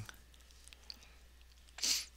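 A pause in speech: near silence with one faint click about a second in, then a short breath near the end.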